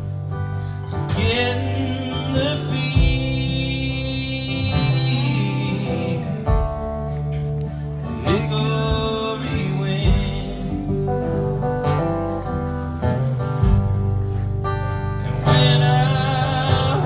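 A man singing a slow country song to his own strummed acoustic guitar, played live.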